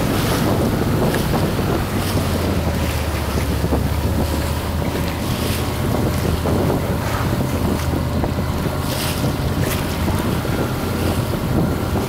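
A boat's engine running steadily, with wind buffeting the microphone and sea water splashing.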